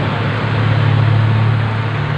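Street traffic: the engine of a vehicle passing close by makes a steady low hum over the general road noise, growing louder about half a second in.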